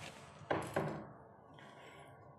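Two knocks against a clear water-filled test tank, a quarter second apart about half a second in, each with a short ring. They come as the submerged switch settles on the bottom.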